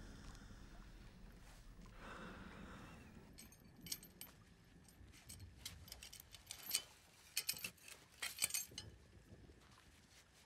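Metal hook clinking and rattling as it is handled on a rope, in short scattered clusters over the second half.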